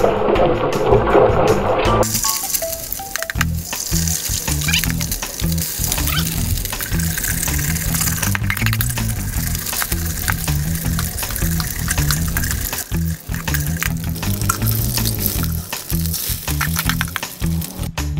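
Background music with a repeating bass line over eggs frying in oil in a steel wok. The sizzle is loudest in the first couple of seconds as a raw egg drops into the hot oil, then settles to a steady hiss.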